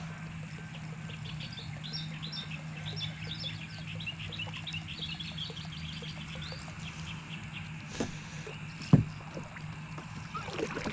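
Birds chirping, many short quick calls through the first two-thirds, over a steady low hum. Near the end come two sharp knocks, the second the loudest sound.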